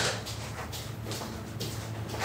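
Footsteps on a hard floor, about two a second, over a low steady hum.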